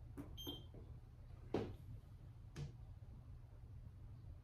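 One short, high electronic beep from a digital measuring device about half a second in. Two light knocks follow about a second apart, from the racquet and equipment being handled.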